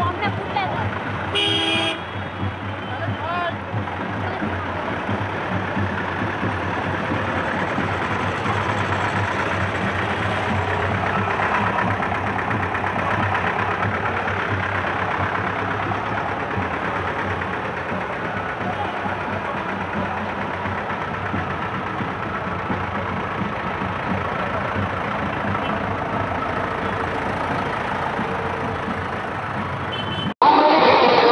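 Street procession noise: vehicles running and people talking, with a steady low hum underneath. A short horn toot sounds about two seconds in.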